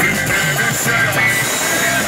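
Live band playing a rock song with keyboards, guitar and drums over a steady repeating bass line.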